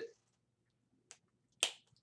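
A pause with a faint tick about a second in, then one short, sharp click a little later.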